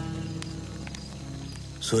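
Background film score of low sustained notes, fading gradually. A voice breaks in right at the end.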